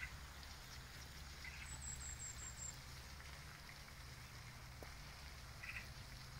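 Faint outdoor ambience: a steady low rumble and light hiss, with a few short high bird chirps and a quick run of very high chirps about two seconds in.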